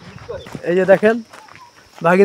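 A man's voice speaking briefly in the first half, with quieter outdoor background after it.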